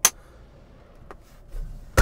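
A sharp plastic click as the hinged cover of a console power outlet is flipped open, then a faint click about a second in. Near the end a low rubbing rumble and a loud knock as the clip-on microphone snags on a seatbelt.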